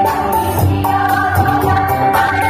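A women's choir singing held notes together with electronic keyboard accompaniment and a pulsing bass, amplified through a PA system.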